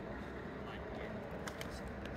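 Quiet outdoor background with a low, uneven rumble of wind on the microphone.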